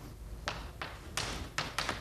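Chalk tapping and scraping on a blackboard in a few short strokes as words are written, about four in two seconds.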